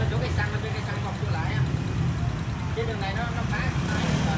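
Small step-through motorbike engine idling steadily close by, with faint voices in the background.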